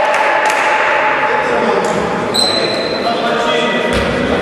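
Basketball game in an echoing sports hall: the ball bouncing, with sneaker squeaks and players' shouts. A thin high squeak runs from about halfway through to near the end.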